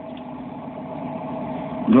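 A machine running with a steady hum, getting slowly a little louder; a man starts talking at the very end.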